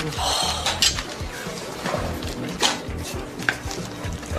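Dishes and cutlery clinking in a few sharp strikes over restaurant background ambience, with soft background music.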